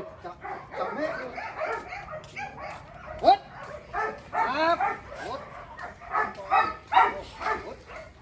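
Dogs barking and yipping in short, repeated calls, with the loudest about three seconds in and again near seven seconds.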